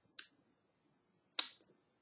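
Two short, sharp mouth clicks about a second apart, the second louder: lip or tongue clicks from a man pausing between words.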